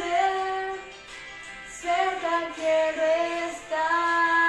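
A young woman singing solo, holding long sustained notes; her voice drops away briefly about a second in and returns just before the two-second mark with more held notes.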